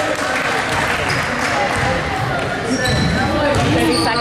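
A basketball bouncing on a hardwood gym floor as it is dribbled, with a few short, high sneaker squeaks and spectators talking.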